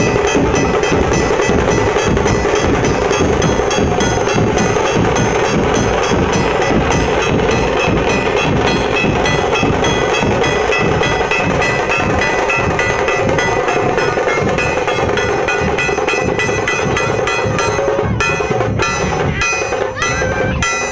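Dhol drums beaten with sticks in a fast, steady rhythm, with sustained melodic music sounding over them.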